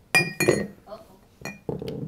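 Four sharp clinks and knocks of hard objects striking, each with a brief ring: two close together at the start, two more in the second half.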